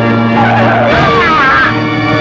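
Car tyres screeching in a wavering squeal for about a second and a half as the car brakes hard, over steady background film music.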